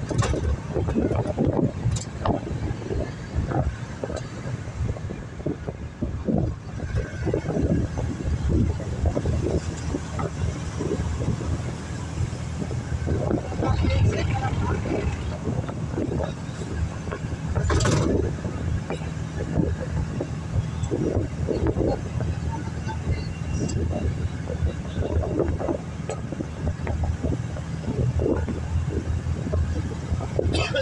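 Van engine and road noise inside the cab while driving at highway speed, a steady low rumble, with a brief knock about eighteen seconds in.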